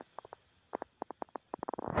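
A quick, irregular run of soft clicks that bunch closer together toward the end, with near silence between them.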